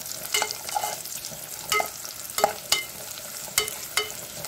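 Cashews and raisins frying in a metal pan with a steady sizzle, while a metal spoon stirs them and clinks against the pan several times with a short metallic ring.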